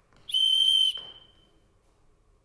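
A single short blast on a whistle: one steady, shrill note lasting about half a second, cut off sharply and then fading with a little reverberation.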